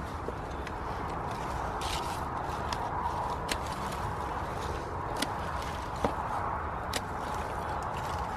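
Pruning secateurs cutting pumpkin stalks, with handling among the dry vines: a scatter of short sharp clicks over steady outdoor background noise.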